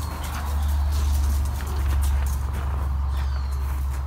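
Low rumble of the phone's microphone being carried and jostled, loudest in the first half, with light steps crunching on gravel.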